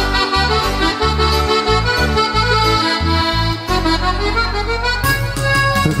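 Cumbia band playing an instrumental passage led by accordion, with held chords over a rhythmic bass line.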